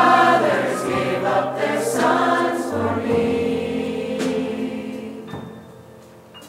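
Teen choir singing with a low bass line sustained underneath; the sung phrase fades away over the last second or so.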